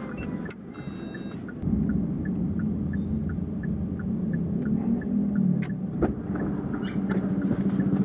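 A taxi pulling away from the kerb: steady low engine and road hum that gets louder about two seconds in, under a turn indicator ticking about three times a second. A short high electronic beep sounds about a second in.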